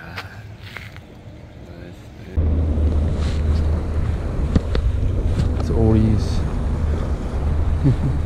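Wind buffeting the microphone: a heavy, steady low rumble that starts suddenly about two seconds in, over wind-driven choppy water.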